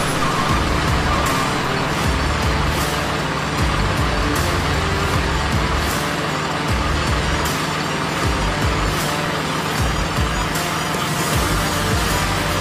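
Background music mixed with the sound of a heavy truck's diesel engine running steadily.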